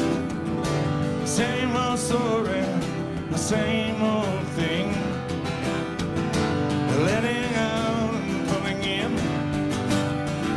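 Live acoustic band music: acoustic guitars and a grand piano playing an instrumental passage at a steady level, with a wavering lead line that glides upward about seven seconds in.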